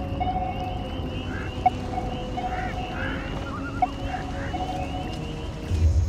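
Swamp ambience: a fast high insect-like trill and scattered short chirping calls over a low steady drone, with a faint tone pulsing about every two seconds. A low rumble swells near the end.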